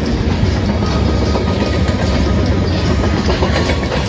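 Freight train of covered hopper cars rolling past close by: a steady, loud rumble of steel wheels on the rails, with a few faint wheel clicks over rail joints late on.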